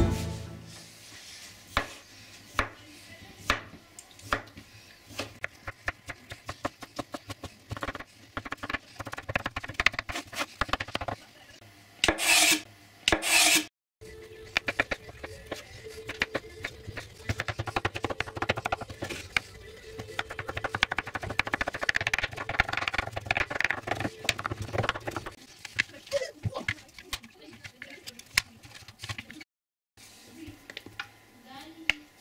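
Kitchen knife cutting soft boiled beetroot on a wooden cutting board: irregular knocks of the blade meeting the board, coming faster as the beet is diced. Two louder noisy bursts of about a second each come before the fast cutting.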